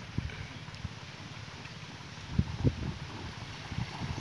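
Pump-fed irrigation water pouring from a hose outlet into a field furrow with a steady rushing hiss. A couple of low thuds come a little past halfway.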